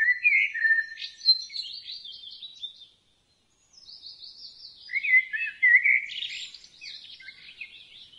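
Birds chirping and trilling in quick high calls, cutting off to dead silence for under a second about three seconds in before starting again.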